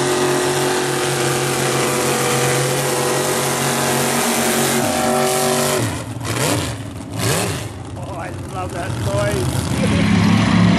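Mud bog truck engines running hard at steady high revs. About six seconds in the sound drops, and the engine note sweeps down and back up as the revs fall and rise, then goes on more quietly.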